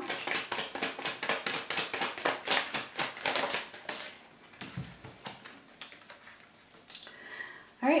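A deck of tarot cards being shuffled by hand, a quick run of papery flicks for about four seconds. Then it quietens, with a soft knock a little after the middle and light card handling on the wooden table.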